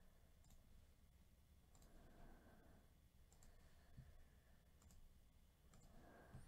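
Near silence: faint room tone with a few soft computer clicks, about one every second or so.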